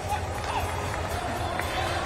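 Arena ambience: crowd voices and chatter over background music and a steady low rumble.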